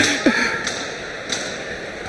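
Three faint sharp smacks of boxing gloves landing, over a steady murmur of the hall crowd.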